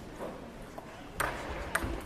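Table tennis balls clicking: two sharp taps of a celluloid-type ball about half a second apart, a little past the middle.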